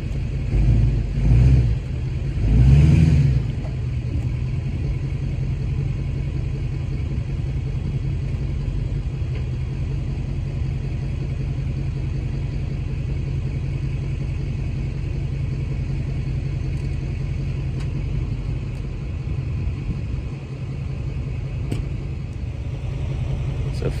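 Tow vehicle's engine pulling a tandem-axle travel trailer forward onto plastic leveling blocks. There are two or three louder surges of engine effort in the first few seconds, then a steady low running.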